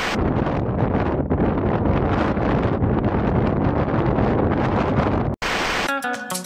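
A short burst of TV-static hiss, then heavy, gusting wind buffeting a microphone. The wind cuts off abruptly near the end, and a second short static burst follows.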